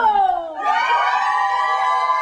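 A person's voice giving a falling cry, then holding one long, high, steady note from about half a second in.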